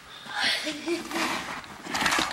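A faint, indistinct voice, much softer than the talking around it.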